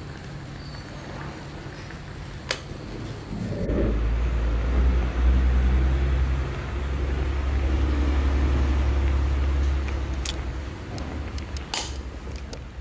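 Aluminium Bialetti moka pot on a gas canister stove: a sharp click, then from about four seconds in a low, steady rumbling gurgle as the brewed coffee finishes rising into the upper chamber, easing off shortly before the end. A few light metal clicks near the end as the hinged lid is shut.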